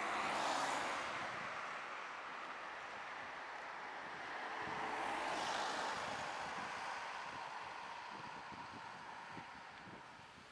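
Road traffic: two cars pass, the first right at the start and the second about five seconds in, each a swell of tyre and engine noise that fades away.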